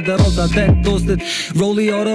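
A rapper rapping in Albanian over a hip-hop beat with deep bass notes that slide downward. The bass drops out a little past halfway, leaving the voice.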